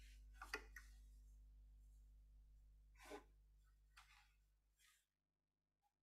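Near silence: faint room tone with a low hum and a few short faint clicks, cutting to dead silence about five seconds in.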